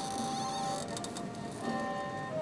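Thai classical ensemble playing a slow instrumental passage of long held melodic notes, with a change of note near the end.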